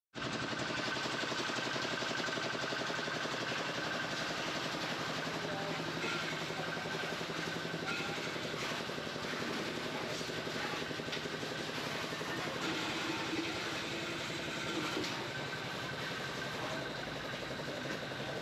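Steady background din of a busy open-air market: indistinct voices and the running of passing vehicle engines, with occasional small clicks and knocks.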